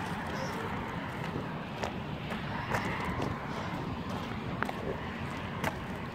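Footsteps on a gravel roadside, a scattering of short irregular crunches over a steady low background rumble.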